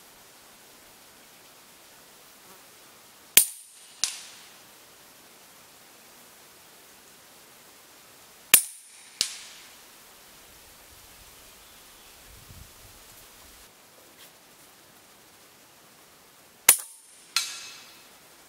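Three sharp cracks from a Huben K1 V2 .22 pre-charged pneumatic air rifle firing cast lead slugs, spaced several seconds apart. Each shot is followed under a second later by a fainter second crack with a ringing tail.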